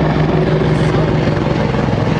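Medevac helicopter running, a loud steady drone of rotor and engine.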